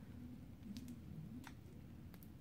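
Quiet room tone with a low hum and two faint clicks, about three-quarters of a second and a second and a half in.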